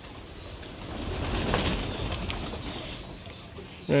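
A flock of domestic pigeons' wings flapping as the birds come down to land, a rushing whir that swells to a peak about a second and a half in and then fades.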